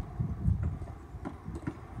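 A few short, sharp knocks and thuds from a basketball and feet on a gravel court, over a low rumble.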